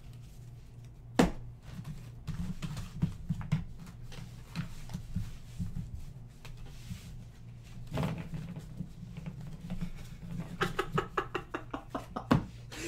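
Hands gathering up opened trading card boxes and packaging on a desk: scattered light knocks and handling sounds, with a sharper click about a second in and a quick run of ticks near the end.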